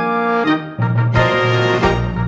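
Instrumental orchestral musical-theatre backing track: a held chord, then the full orchestra comes in a little under a second in, with a heavy bass line and regular drum hits.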